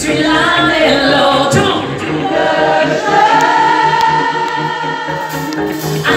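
Live pop band playing: a male singer's high voice over keyboards, electric guitar and a steady beat, holding one long note in the middle.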